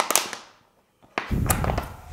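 Thin plastic drinks bottle crackling and crunching as scissors cut into it: a short burst at the start, then a louder, longer crunch about a second in as the blades close through the plastic.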